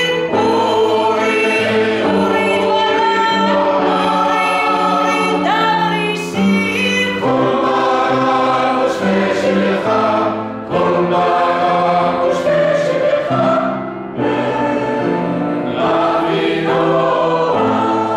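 Mixed choir of men's and women's voices singing sustained chords in phrases, with brief breaks between phrases about six, ten and a half and fourteen seconds in.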